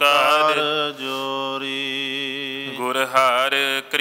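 Male voices chanting a Sikh devotional invocation in a slow, drawn-out melody, with long held notes over a steady low drone.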